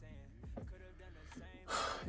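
A quick, sharp intake of breath near the end, just before speaking resumes, over faint background music.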